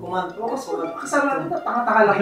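Speech only: people talking in a small room.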